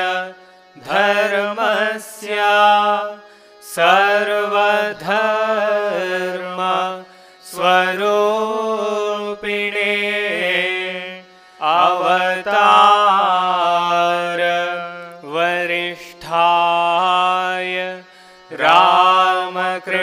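Devotional singing of a Sanskrit hymn in long melodic phrases with short breaks between them. A low note is held steady beneath the voice.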